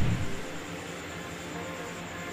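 Quiet background music with soft held tones under a pause in the narration.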